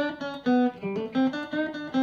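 Electric guitar played clean, a quick single-note lick of about four to five notes a second. It is the same fingering moved to a higher position on the neck, so the lick sounds in a different key.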